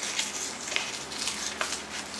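Brown paper envelope being torn open by hand: paper rustling and crinkling, with a few small sharp crackles.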